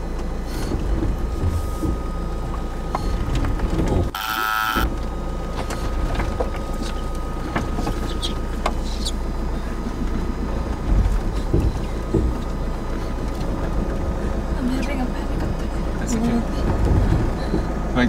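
Cab noise from a van grinding slowly up a steep, rough dirt track: steady engine rumble, with frequent knocks and rattles as it goes over the bumpy ground. A brief buzzing burst sounds about four seconds in.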